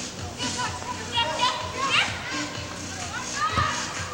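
Several women's voices shouting and calling out during an indoor soccer game, with a single thud about three and a half seconds in.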